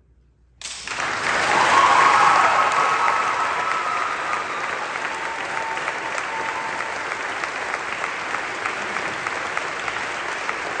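Audience applause in a church after an a cappella choir piece: a moment of hush, then clapping breaks out suddenly about half a second in, swells to its loudest around two seconds in, and settles into steady applause.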